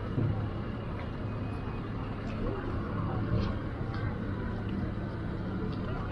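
Pickup truck engine running steadily at low speed as it slowly tows a loaded boat trailer.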